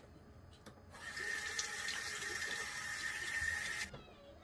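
Water tap running steadily into a sink, turned on about a second in and shut off just before the end, for rinsing the face after cleansing.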